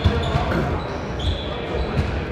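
Basketballs bouncing on a hardwood gym floor in the background, many dull thumps in quick, uneven succession, with a few short high squeaks and faint distant voices.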